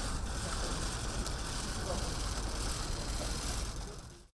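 Outdoor background noise: a steady low rumble and hiss with faint voices in it, starting to fade out near the end.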